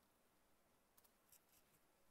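Near silence, with a few faint clicks of a computer keyboard and mouse about one second in and again shortly after.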